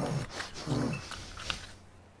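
Animal-like creature growls: two short growls, then a few sharp clicks, with the sound dropping away shortly before the end.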